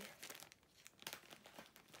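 Plastic mail packaging crinkling faintly as it is handled and opened, in short irregular crackles.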